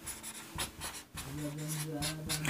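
Marker pen writing on a whiteboard: a few short, quiet strokes as symbols are written. A faint, low, steady hum comes in about a second in.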